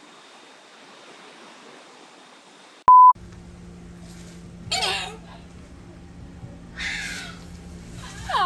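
A short, loud, steady electronic beep about three seconds in, then an Amazon parrot gives two short squawks about two seconds apart over a low steady hum.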